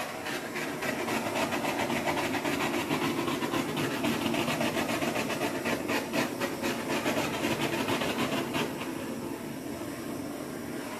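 Handheld gas torch burning with a steady hissing rush as its flame is played over wet acrylic paint, a little quieter for the last second or so.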